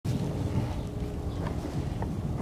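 Wind buffeting the microphone, a steady low rumble with a faint hum underneath.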